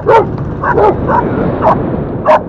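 A dog barking repeatedly, about five sharp barks in two seconds, chasing a moving motorcycle, over the low, steady running of the Yamaha Crypton-X's small engine.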